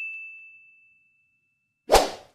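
A bright ding sound effect from a like-button outro animation rings one clear high tone and fades away over about a second and a half. Near the end comes a short, sudden hit as the graphic sweeps off screen.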